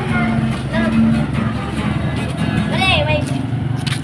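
A child's voice singing short wavering phrases over backing music.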